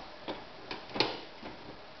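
A few light taps and clicks on a plastic high chair as a toddler handles its tray, the sharpest knock about a second in.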